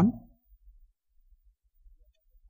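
The end of a man's spoken sentence, then near silence: room tone with no audible switch click.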